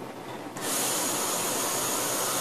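Fishbone rebuildable dripping atomizer firing during an inhale: a steady hiss of the coil vaporising e-liquid and air rushing through its large air holes, starting about half a second in.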